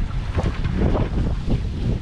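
Wind buffeting the microphone in the cockpit of a sailboat under way: a gusty low rumble that swells and eases.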